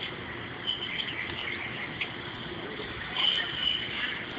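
Background noise with an insect's high, steady trill, heard briefly just under a second in and again, louder, a little past three seconds in.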